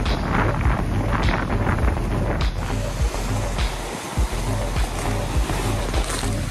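Wind on the microphone and water rushing past the hulls of a Prindle 19 catamaran sailing fast in open sea, mixed with background music with a steady low beat. The rush of wind and water eases about halfway through, leaving the music more to the fore.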